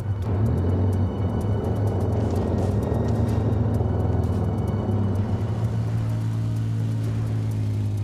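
All-terrain vehicles' engines running steadily as the quads pull away along a gravel track, under background music.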